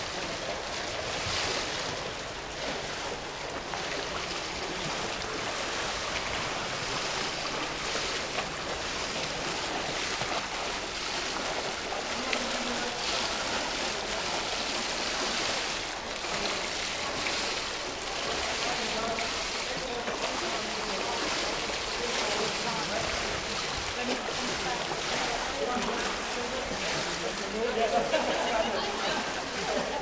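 Water splashing and churning from a swimmer doing front crawl, the arm strokes and kicks making a steady wash of splashing noise.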